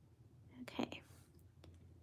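A person's brief breathy whisper or exhale, followed by two faint clicks.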